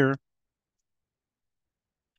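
A man's voice finishing a word in the first moment, then dead silence with no background noise at all.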